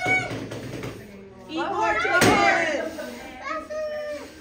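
A group of children talking and calling out together, with one sharp knock a little past halfway.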